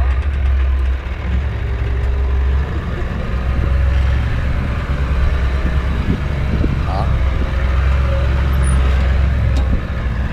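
Four-wheel drive vehicle crawling slowly along a soft sand track: a steady low engine and drivetrain rumble, heard from a camera mounted on the body beside the front wheel.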